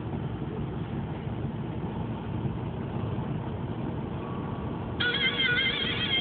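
Steady road and engine noise inside a car cabin at freeway speed. About five seconds in, music starts over it with a wavering, sliding melody.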